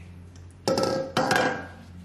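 Stainless steel mixing bowl knocking on a stone benchtop twice, about half a second apart, each knock ringing briefly, as dough is tipped out of it and the bowl is set down.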